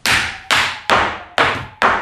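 A paintbrush being beaten against a hard surface to shake the paint thinner out of it: five sharp thwacks, about two a second, each ringing out briefly.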